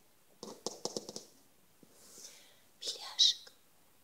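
Soft whispered speech in two short bursts, about half a second in and about three seconds in, with quiet between.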